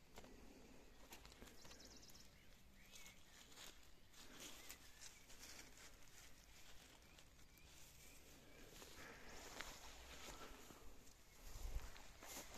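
Near silence, with faint rustling and light ticks of grass and leaves being handled close to the microphone, and a soft low thump near the end.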